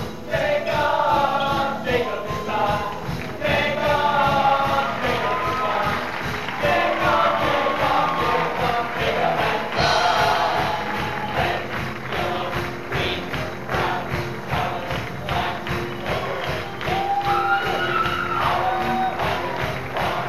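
Large stage-musical cast singing together over an upbeat instrumental backing with a steady beat, in a fast medley finale.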